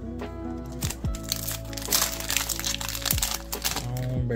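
A trading-card booster pack wrapper being torn open and crinkled by hand, crackling from about a second in until near the end, over background music with a steady beat.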